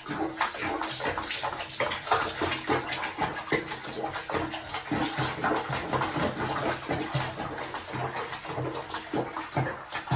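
Water splashing and sloshing in a bathtub as a cat moves through it, in quick, irregular splashes.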